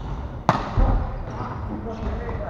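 A volleyball struck once about half a second in, a sharp smack in a large gymnasium, followed shortly by a low thud. Players' voices call out around it.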